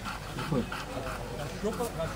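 A Belgian Malinois whining in short whimpers that rise and fall in pitch.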